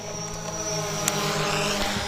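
A boat motor humming steadily at a constant pitch, with a thin high whine over it for about the first second.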